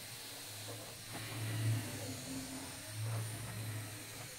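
Electric motor and plastic gearing of a LEGO Technic walking vehicle whirring, with a low hum that swells and fades twice under changing load, and a few faint clicks.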